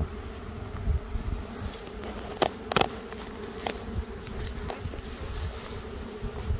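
Honeybees buzzing in a steady hum from an opened hive, with a frame covered in bees lifted out of the box. A couple of sharp clicks come about two and a half seconds in.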